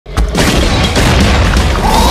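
Cinematic thunderclap sound effect in an intro jingle: a sudden loud boom just after the start, running on as a dense, steady rumble, with a pitched tone of the music coming in near the end.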